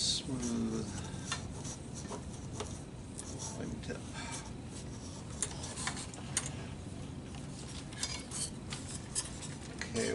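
Scattered light crackles and small taps of transparent plastic heat-shrink covering film being handled and ironed onto a model airplane wing with a covering iron, over a low steady hum.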